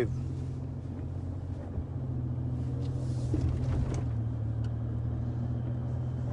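Steady low hum of a car, heard from inside its cabin.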